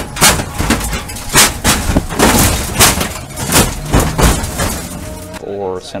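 A drift car's V8 running hard on track, with a string of sharp cracks a few times a second over a loud, noisy roar.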